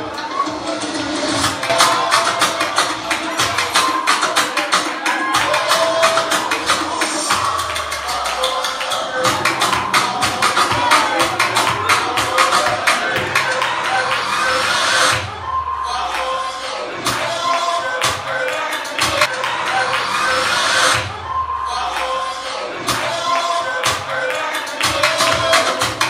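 Upbeat rumba-style dance music with fast, dense percussion and hand clapping. The percussion breaks off briefly twice in the second half.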